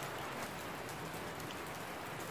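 Steady rain falling, an even hiss with a few faint scattered ticks of drops.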